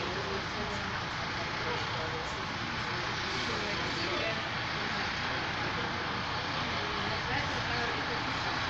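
A steady noise with faint, indistinct voices talking underneath it.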